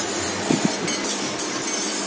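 Oil heating in an aluminium karai, sizzling with a steady high hiss and irregular crackles.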